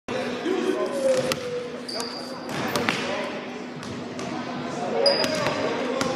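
Several sharp knocks, some echoing in a hard-walled hall, over background voices and a steady low hum, with two short high squeaks.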